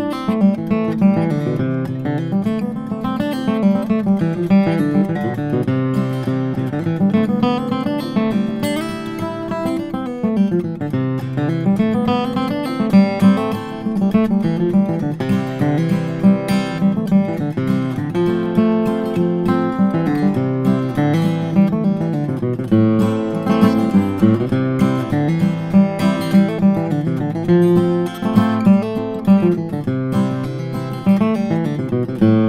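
Martin CEO-7 acoustic guitar, with a solid Adirondack spruce top and mahogany back and sides, flatpicked in a continuous tune. Chords are picked, with single-note bass runs moving up and down between them.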